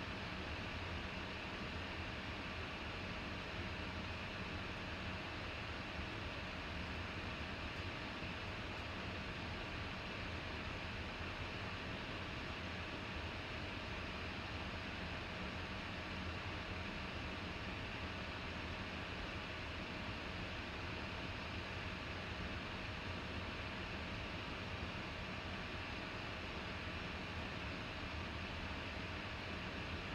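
Steady, even background hiss of room tone with a faint constant hum, unchanging throughout, with no distinct events.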